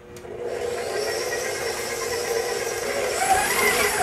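Electric motor of a tilt-head stand mixer running steadily as it beats the cannoli dough after red wine is added, then cutting off at the end once the dough is mixed.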